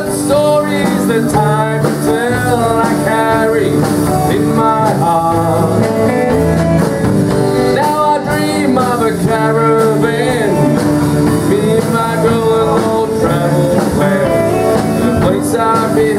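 Live country band playing a song: acoustic and electric guitars, keyboard, bass and drums, with a pitched lead line over the steady backing.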